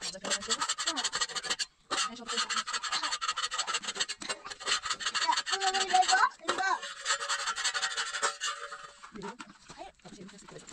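Fast, even rasping scrapes, about ten a second, of a metal knife or spatula worked against flatbread on a domed iron griddle (saj). The scraping breaks off briefly just before two seconds in and thins out after about eight seconds. A short voice is heard about six seconds in.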